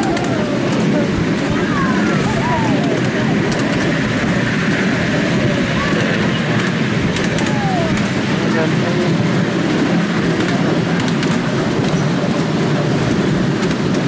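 Steady rumble of a ride-on miniature railway train running along its track, with faint clicks now and then from the wheels.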